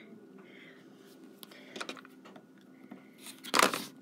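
Rotary cutter slicing through quilting fabric along an acrylic ruler on a cutting mat: one short cut near the end, after a few faint ticks of handling.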